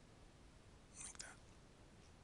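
Near silence: faint room tone, with one brief soft hiss and click about a second in.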